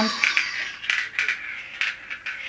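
Marble rolling and rattling through the plastic tracks inside a Perplexus Death Star maze sphere as it is turned by hand, with a few sharp clicks in the second half.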